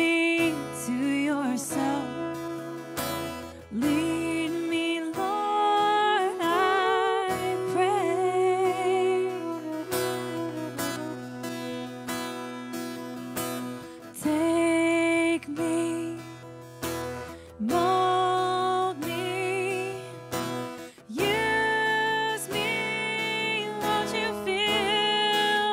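Live contemporary worship song: a sung melody with vibrato over strummed acoustic guitar.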